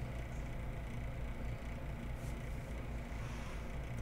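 A steady low hum of background room noise, with no distinct sounds.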